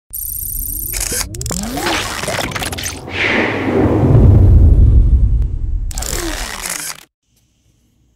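Logo-intro sound effects: whooshes, crackles and gliding sweeps build to a deep boom about four seconds in, then a last burst cuts off suddenly about seven seconds in.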